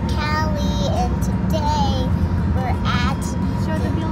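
Steady road and engine rumble inside a moving car, with someone singing in short, wavering phrases over it.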